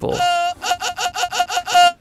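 A sung vocal one-shot sample played through Ableton's Sampler from a keyboard: one longer note, then a quick run of about nine short repeated notes at the same pitch, each scooping up slightly into the note.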